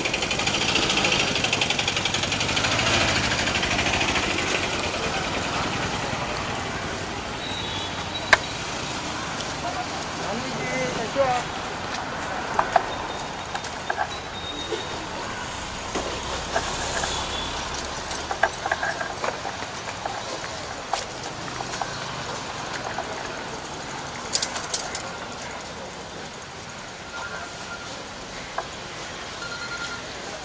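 Street sounds: traffic running, loudest in the first few seconds, with people talking over it and scattered short sharp clicks.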